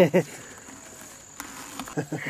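A short laughing 'ah' right at the start, then quiet outdoor background with a faint, steady, high insect drone and a faint click midway.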